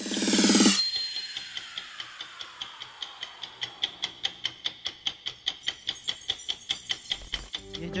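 Sound-design effect for an animated logo: a short swelling chime-like tone, then a steady clock ticking about five times a second under a fading ring.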